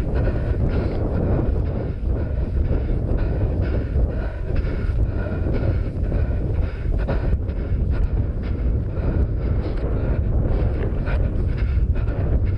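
Wind buffeting a head-mounted GoPro's microphone in a steady low rumble. Over it, a runner's footfalls on rough moorland grass come in an even rhythm.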